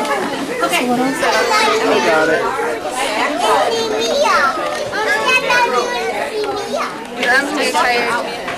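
A group of young children chattering at once, many overlapping voices with no pause.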